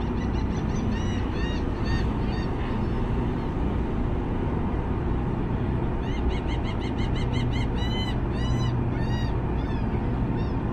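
Gulls calling in runs of short nasal, arched notes: one run at the start, and another from about six seconds in whose notes grow longer and further apart. Under them is the steady low rumble of a ferry's engines as it gets under way.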